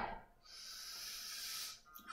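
A woman's deep audible inhale, one steady breath of about a second and a half starting about half a second in and stopping sharply.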